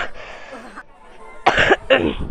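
A woman with a heavy cold coughing: one sharp cough at the start, then a louder pair of coughs about one and a half seconds in.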